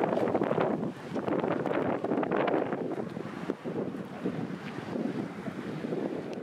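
Gusty wind buffeting the microphone, a rough rumbling rush that rises and falls, with brief lulls about a second in and again past the middle.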